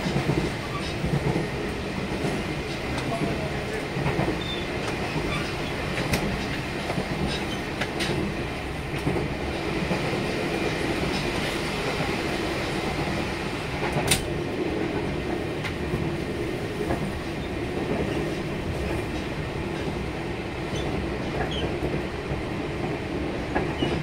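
Taiwan Railways Fu-Hsing class passenger carriage running along the line, heard from inside: a steady rumble of wheels on rail, broken by a few sharp clicks, the loudest about fourteen seconds in.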